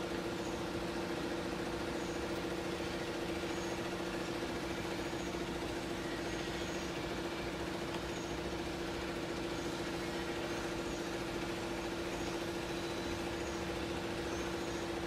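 Nut roasting machine running: its drive motors give a steady mechanical hum with a constant low tone.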